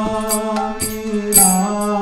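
Devotional mantra chanting set to music: a sustained melodic line over a steady drone, with small metallic cymbal strikes on a regular beat about twice a second.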